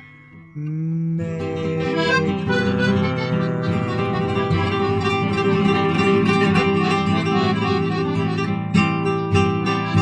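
Acoustic guitar and piano accordion playing an instrumental passage together. After a brief lull the accordion's held chords swell in about half a second in, under picked and strummed guitar, and a few stronger strummed chords come near the end.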